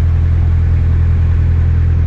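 A narrowboat's inboard diesel engine running steadily under way, a constant low drone.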